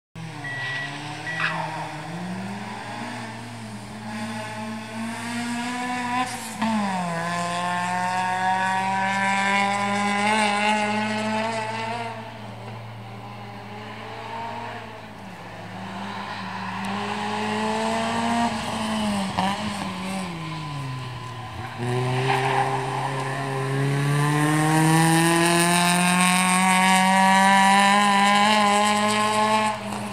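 A hill-climb car's engine revving hard up the course, its note climbing through each gear and dropping sharply at the upshifts, about six seconds in and again about twenty-one seconds in, and easing off in between as it slows for corners. It is loudest near the end as the car passes close, with tyres squealing through the corner.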